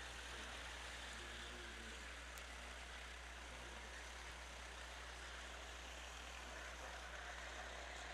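Faint, steady engine noise of racing karts out on the track, with a low hum underneath.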